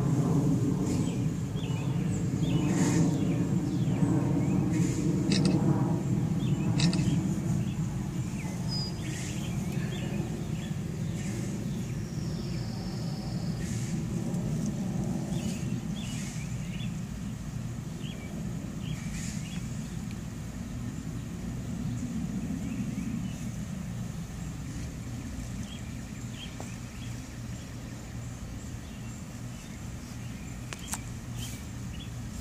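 A motor engine running with a steady low hum, loudest for the first several seconds and then fading. A few faint high chirps are scattered through it.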